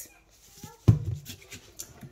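A single sharp knock about a second in, from a kitchen container set down on the countertop, followed by faint handling clicks.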